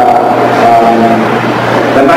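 Speech only: a man lecturing, his voice amplified in a hall.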